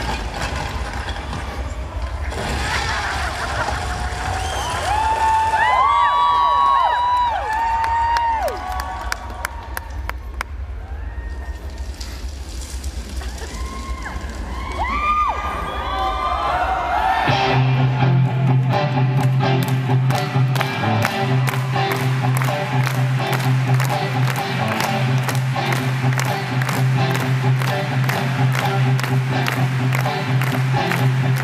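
Live symphonic rock band with a cheering arena crowd. The first half has long bending electric guitar notes over crowd noise. About halfway through, the band comes in with a steady low bass note and a driving beat of about three hits a second.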